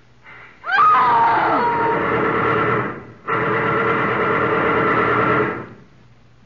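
Two long bursts of sound-effect machine-gun fire, about two seconds each with a short break between, as the police gun a man down. A man's cry, falling in pitch, rises over the start of the first burst.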